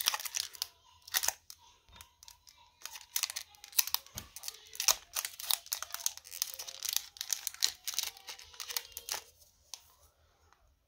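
Foil wrapper of a Pokémon booster pack being torn open and crinkled by hand: an irregular run of sharp crackles and rips, quieter near the end.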